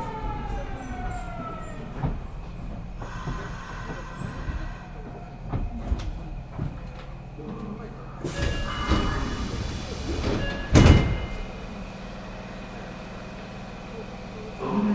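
Nagoya subway 5050 series train with unmodified-software GTO-VVVF inverter drive, whining in several descending tones as it brakes; the whine dies away about two seconds in and the train runs on quietly with a low hum. About eight seconds in a louder rush of noise with steady high tones builds up, ending in a sharp loud knock just before eleven seconds.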